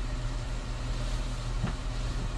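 Steady low rumbling ambient noise bed, with one short soft click about one and a half seconds in.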